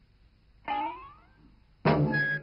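A short wordless cartoon cry, rising in pitch and fading, about a third of the way in. Near the end, music starts abruptly.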